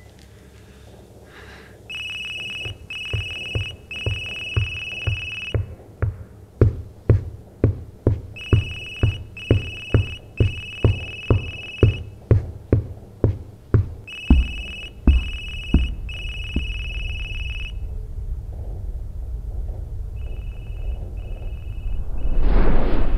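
Electronic telephone ring: a high trilling tone in groups of three rings, heard three times, then two shorter rings near the end. Under it run regular thumps about two a second through the middle, giving way to a low rumble.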